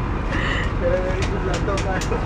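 Steady low rumble of a Greyhound coach heard from inside its passenger cabin, with a few light clicks in the second half.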